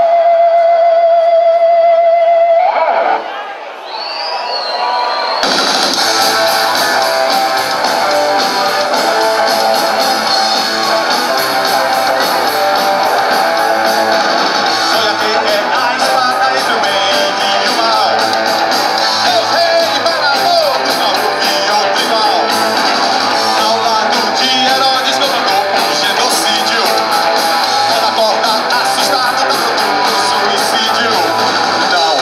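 Live rock band playing loud with electric guitars, bass and drums. A single sustained note ends about three seconds in, the level drops briefly, then the full band comes in about five seconds in and drives on steadily, with a singer on the microphone.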